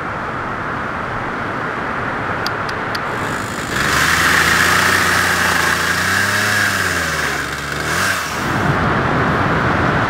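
A steady rushing noise, then an engine comes in a few seconds in, runs for about four and a half seconds with its pitch rising and falling once, and stops.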